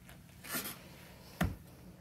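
A person sitting down onto a swivel office chair: a short rustle, then a single dull thump about a second and a half in as the chair takes the weight.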